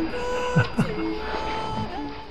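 Background music of a woman singing a Ladino love song, holding long notes, with a person's brief laugh about a second in.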